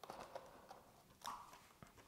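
Near silence, with a few faint taps and a soft rustle from hands pressing plastic mesh into a plastic drink bottle.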